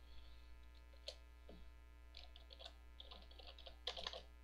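Computer keyboard typing: a scattered run of quick, faint key clicks, loudest in a cluster near the end, over a steady low mains hum.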